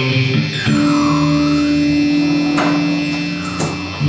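Live rock band music: a long held, sustained chord rings from about half a second in until near the end, with a tone sliding down and back up above it.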